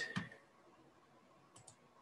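Two quick computer mouse clicks in close succession about one and a half seconds in, over faint room noise.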